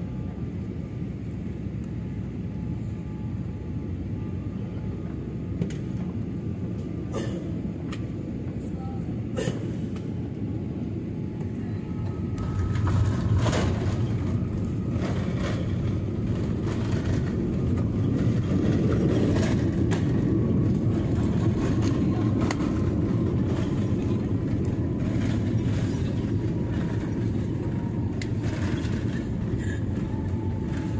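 Airliner cabin noise during landing, heard from a window seat: a steady rumble of engines and airflow with a faint whine slowly falling in pitch. About twelve seconds in the rumble grows louder and stays up as the plane is on the runway rolling out with its spoilers raised.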